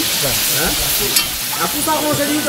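Fish pieces sizzling in a hot sauce in a large aluminium pot while a metal ladle stirs them, with a single sharp click about a second in.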